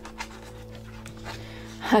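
A steady, held low chord of background music, with a faint tick of a hardcover book's paper jacket being handled about a quarter second in.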